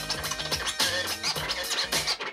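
Vinyl scratching on a turntable run through Serato Scratch Live: quick back-and-forth cuts of a sample over a backing beat.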